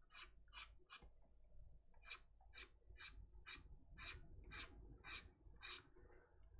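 Faint, short scratchy strokes of a stylus on a graphics tablet, about two a second, as quick brush or erase strokes are made.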